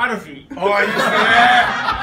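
Several men laughing and chuckling together, with talk mixed in; it swells to its loudest from about half a second in.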